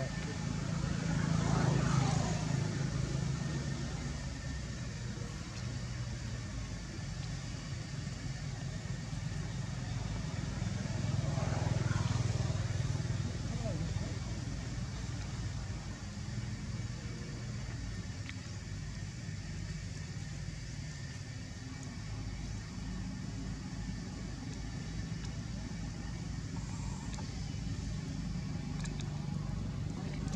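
Motor vehicles passing by, one swelling up and fading about two seconds in and another about twelve seconds in, over a steady low traffic hum.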